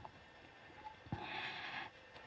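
Near silence, then about a second in a short, soft breath drawn in close to a microphone, lasting under a second.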